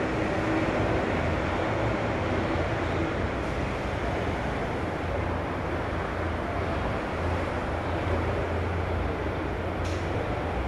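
Steady low hum and hiss of machinery or ventilation noise in an elevator lobby, with a faint steady tone for the first few seconds and a short click near the end.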